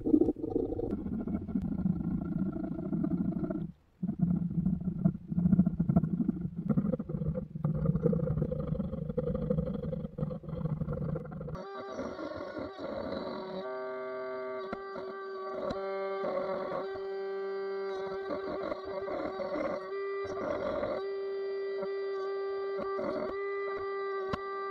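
A round file rasping in uneven strokes on an oak handle. About halfway through, a Ryobi cordless trim router starts, its motor giving a steady high whine, with short bursts as the spinning bit cuts into the wood of the handle.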